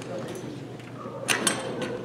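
Two quick sharp knocks close together a little past halfway, from a cadet performing an exhibition rifle drill routine, over a low murmur of voices in a large hall.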